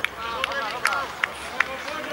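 Players calling out to one another across a football pitch during play, short shouts over open-air background noise, with several short sharp knocks about a second in.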